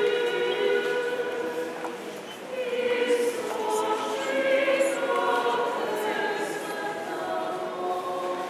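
Many voices singing an Orthodox church hymn together in long held notes. There is a brief break about two seconds in before the next phrase begins.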